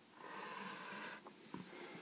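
Faint scratching of a pencil drawn along a ruler on paper, one stroke lasting about a second, followed by a quieter rustle as the ruler is moved.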